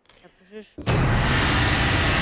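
Studio transition sting: a sudden loud rumbling boom about a second in, which carries on as a steady rumble.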